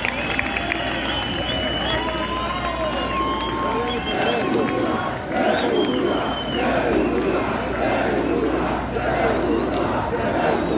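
A large metal-concert crowd shouting and chanting together, many voices at once, growing fuller about halfway through, over a steady low hum from the PA.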